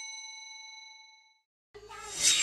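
A bell-like chime sound effect, with several clear tones ringing together, fading away over about the first second and a half. A loud rushing noise begins near the end.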